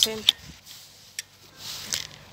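A bicycle being leaned against a metal pole: one sharp metallic click just after the start and a fainter click about a second later.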